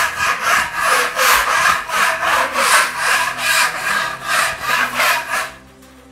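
Steel spatula scraping lightly over a painted wall in quick, regular strokes, about three a second, knocking off small dried paint lumps. The scraping stops abruptly near the end.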